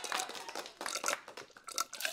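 Light, irregular clicks and rattles of a drink tumbler being handled and lifted to drink from.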